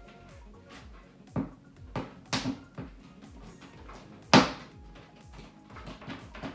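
Hard plastic knocks and rubs as a lamp socket is worked back and forth into a hole in a plastic storage tote, with one sharp, loud knock about four seconds in.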